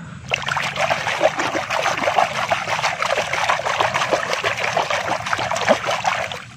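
Shallow muddy water splashing and churning as a hand scrubs a plastic toy figure in it: a fast, continuous patter of small splashes that starts just after the beginning.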